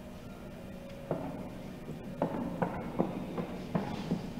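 A horse's hooves knocking on a wooden plank bridge at a walk. The hollow knocks start about a second in and then come about two or three a second.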